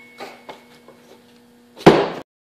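Gloved hands scraping in a bucket of foundry sand while breaking out an aluminum sand casting, with a few faint knocks over a faint steady hum, then one loud knock near the end as the wooden mold flask is lifted.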